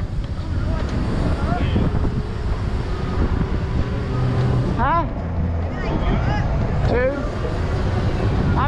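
Wind buffeting the microphone of a helmet camera on a modified 72-volt Razor electric scooter riding at speed, a steady low rumble. Short voice sounds break in about five and seven seconds in.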